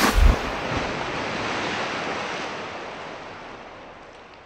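Outro sound effect: a few deep booms in the first moment, then a rushing noise like surf or wind that slowly fades away.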